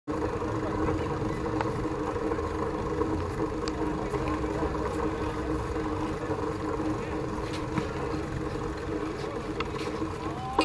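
Ambience of a busy walkway: people's voices around, over a steady mechanical hum with several held tones that fades out about seven seconds in, and a few light clicks.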